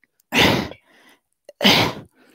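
A man making two short, breathy grunts of effort, about a second apart, as he strains to pull his foot up behind his head.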